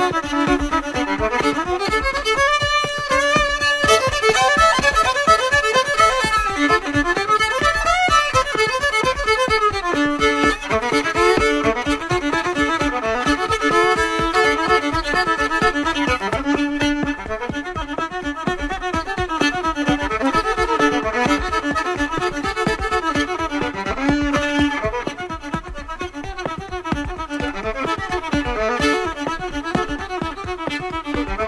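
Fiddle playing an instrumental break of an old-time river song, its notes sliding up and down over a steady beat.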